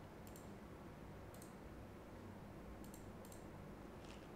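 Near silence with a low room hum and a few faint, short clicks of a computer mouse, scattered across the four seconds.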